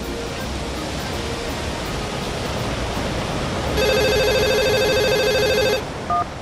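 A steady rush of wind noise that slowly grows louder, with leaves blowing. About four seconds in, a mobile phone rings for about two seconds with a fast trill of two alternating tones, an alert that a storm is coming.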